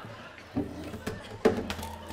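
Knocks and thumps from an acoustic guitar being lifted off its stand, three in all, the loudest about one and a half seconds in.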